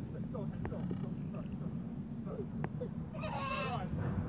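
A young child's high, wavering squeal lasting about a second, near the end, over steady low background noise.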